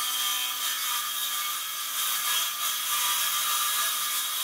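Handheld circular saw running steadily as it cuts through a wooden board, the blade and motor giving an even whine with no break.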